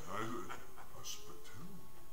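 A person's voice speaking, drawn out and sliding in pitch, rising and falling near the end.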